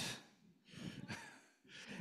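A short, soft breath into a handheld microphone between phrases, about halfway through; otherwise nearly quiet.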